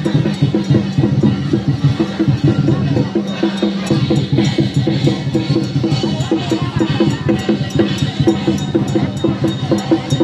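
Festival percussion of drums and clanging metal instruments, beaten in a fast, steady rhythm, with voices of a crowd under it.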